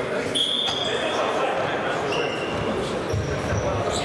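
Indoor futsal game in a large, echoing sports hall: a steady din of players' shouts and spectators' voices, with several short high squeaks of shoes on the court floor.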